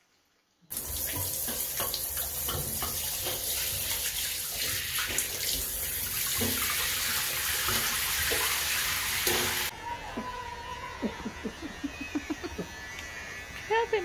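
Shower head spraying water onto a dog in a tiled shower stall, a loud steady rush that starts under a second in and stops abruptly about ten seconds in. After it, electric hair clippers buzz under a run of short voice sounds.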